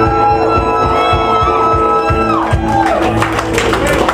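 Live band music: a trumpet holds one long high note over guitar and drums, then falls off about two and a half seconds in.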